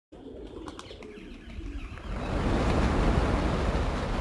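A large flock of rock pigeons taking off together. After a quieter start with a few sharp wing claps, a dense rush of flapping wings swells about two seconds in as the flock lifts off.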